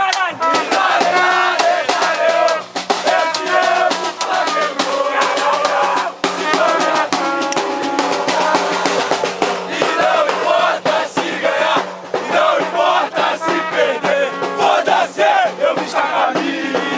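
A group of football supporters chanting loudly in unison, with a large bass drum beaten in quick, steady strokes.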